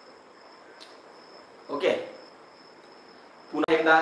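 A cricket chirping faintly and steadily as one unbroken high trill. About two seconds in there is a short vocal sound, and near the end a man starts to speak.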